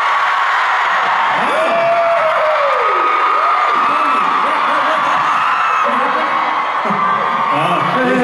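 Large concert audience screaming and shouting all at once, many high voices overlapping in a continuous din as the fans call out answers to a question from the stage.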